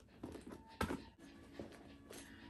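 A small item slipped into a handbag and handled among its contents: soft rustling, with one sharp tap a little under a second in.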